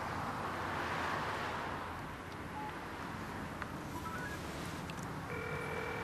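Steady traffic hum, swelling about a second in, with a few short electronic beeps from a smartphone as a call is placed. Near the end a phone ringback tone sounds for about a second: the call is ringing through.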